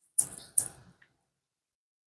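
A wooden craft stir stick set down into a clear cup, giving two short, sharp knocks in quick succession.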